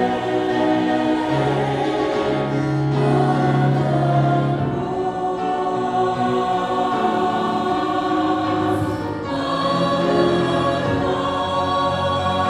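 Mixed church choir singing long, held chords, with a woman soloist on a microphone out in front. The sound thins for a moment about nine seconds in, then the full chord comes back.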